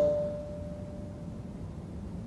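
A pause between spoken sentences: a faint, steady single ringing tone fades away over about the first second, leaving low room noise.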